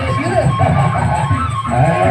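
Traditional Sasak music accompanying a presean stick fight: a steady drum beat with a melody that glides in pitch over it.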